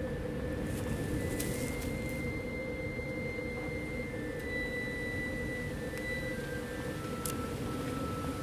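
Quiet film soundtrack: a steady low hum with faint, sustained high tones above it, and two light clicks, one early and one near the end.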